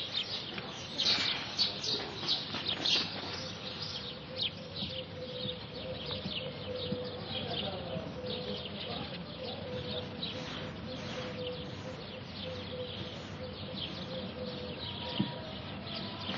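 Small birds chirping over and over, many short high chirps, with a steady hum underneath.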